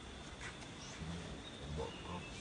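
Long-tailed macaque giving two short low grunts, about a second in and again near the end, with a faint click shortly before the first.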